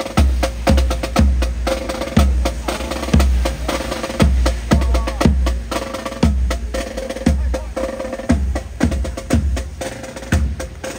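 Marching band playing a steady march beat: bass drum strikes about twice a second under snare and sharp wood-block-like clicks, with the band's melody faint above the drums.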